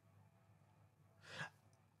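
Near silence: room tone, with one short, faint breath from a man at the microphone about a second and a half in.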